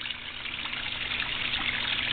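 Steady trickle and splash of water falling into a garden koi pond, the return flow from its homemade bio filter.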